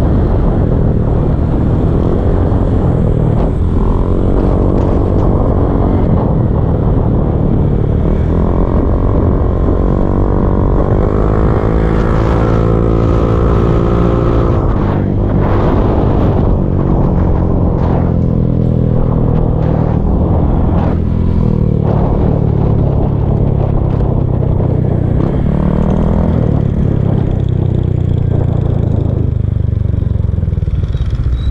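Motor scooter engine running while riding, rising in pitch as it speeds up from about eight seconds in and dropping back a few seconds later, then running steadily again.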